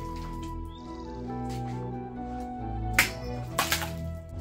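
Background music with steady tones, cut by a sharp crack about three seconds in and a quick cluster of smaller cracks just after: an arming sword slicing through a plastic water bottle.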